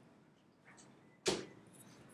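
One brief, sharp sound a little over a second in, over faint room noise.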